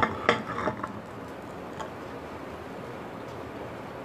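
A ceramic mug set down on a hard surface: a few clinks in the first second, then a faint steady hiss.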